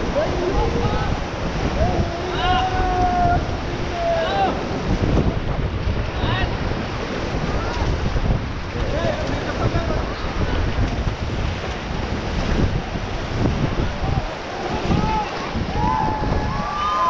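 Whitewater rushing and splashing around an inflatable raft running a river rapid, with wind buffeting the microphone. A few brief voices call out now and then.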